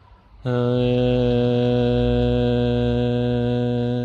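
A man's voice chanting one long held note of a mantra at a steady low pitch. It starts about half a second in and holds for about three and a half seconds.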